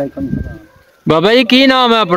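A man speaking, with a short break about a second in before the voice resumes.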